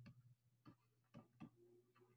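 Near silence broken by about four faint, scattered ticks from a stylus tapping on a drawing tablet while a word is handwritten.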